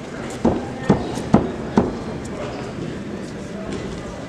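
Four sharp knocks, evenly spaced about half a second apart, over a steady murmur of voices in a large hall.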